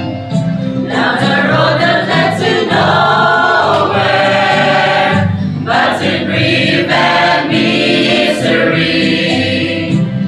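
Mixed choir of men's and women's voices singing a gospel song together, continuously and at full voice.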